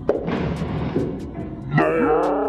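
Bowling ball and pins crashing into the back of the lane and the pit: a sudden crash, then clattering for about a second and a half.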